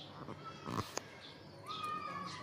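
Animal calls: short high chirps, then one drawn-out pitched call starting near the end, with a sharp click about a second in.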